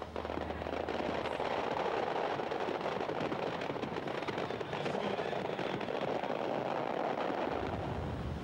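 A steady, dense crackling noise with many small pops packed close together, sitting in the middle range of pitch, with no music or speech over it.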